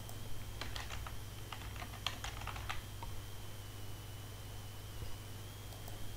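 Computer keyboard typing: a quick run of about ten keystrokes over a couple of seconds in the first half, then only a steady low hum.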